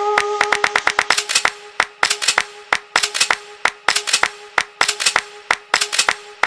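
Afro house track in a stripped-down passage: a quick, syncopated pattern of sharp clap-like electronic percussion hits over one steady held synth note. It fades down somewhat over the first couple of seconds.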